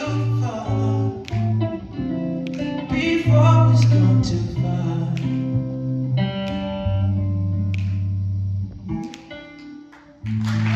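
Jazz upright bass and archtop guitar playing the closing bars of a tune, with walking low bass notes under changing guitar chords. A last chord sounds about nine seconds in and fades away.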